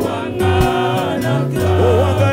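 Live gospel praise singing: a woman's lead voice in a microphone with backing singers joining, over steady instrumental backing with a low bass line.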